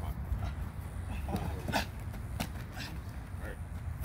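Wind rumbling on the microphone, with a few sharp slaps about a second and a half and two and a half seconds in and brief distant voices.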